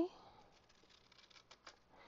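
Scissors snipping a thin lip off the edge of a cardstock gift box: a few faint, sharp clicks.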